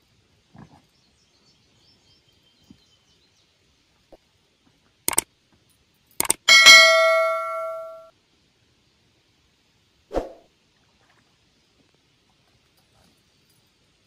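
Subscribe-button sound effect: two sharp clicks about a second apart, then a bright bell chime that rings out and fades over about a second and a half. A single dull knock follows a couple of seconds later.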